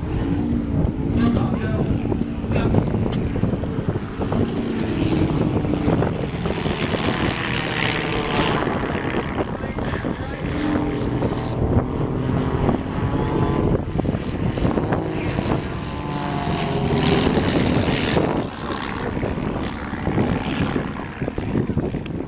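Two Van's RV-7 light aircraft flying aerobatics overhead, their piston engines and propellers droning steadily, the pitch rising and falling as they manoeuvre.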